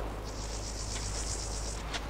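An insect trilling, a high, finely pulsing buzz that starts shortly after the beginning and stops just before the end, lasting about a second and a half.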